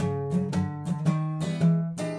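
Steel-string acoustic guitar strummed in a steady rhythm, playing the chords of an eight-bar blues progression.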